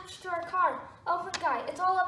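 A high voice making several short, falling squeals and cries, without clear words.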